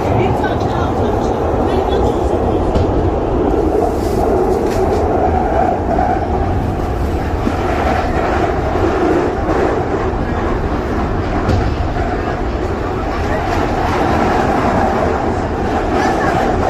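London Underground train running, heard from inside the carriage: loud, steady noise of the wheels on the rails.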